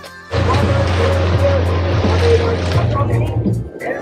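A boat's outboard motor running steadily under a rush of wind and water noise, cutting in suddenly just after the start and dropping away shortly before the end.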